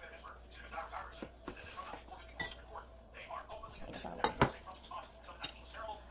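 A spoon scraping and tapping inside a foam takeout container as fried rice and shrimp are dished out, with scattered light clinks and one sharper clink about four seconds in.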